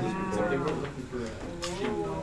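A person's voice making drawn-out, wordless vocal sounds: one held tone that falls slightly at the start, a quieter stretch, then another held tone near the end.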